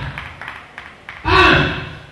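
A person's voice: one short, loud shout about a second in, with only faint background sound around it.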